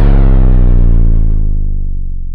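Logo sting sound effect: the loud, low ringing tail of a deep bass boom, slowly fading out.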